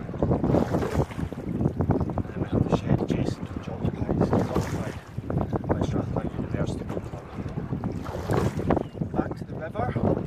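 Water rushing and splashing along the hull of a rowing scull, with wind buffeting the microphone. The noise swells and eases over and over with the rowing strokes.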